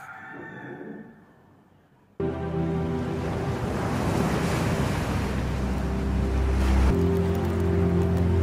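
A quiet gap, then about two seconds in a sudden start of waves breaking on a shore mixed with music of sustained low chords, the chord shifting near the end.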